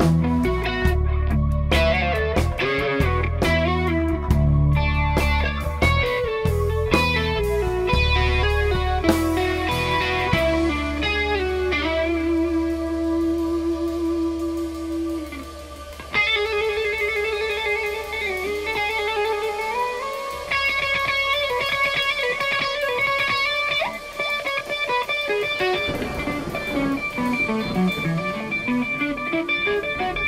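Instrumental rock band playing: melodic electric guitar lead over synth, bass guitar and drums. About halfway through, the drums and bass drop out, and held guitar and synth tones with repeating high figures carry on.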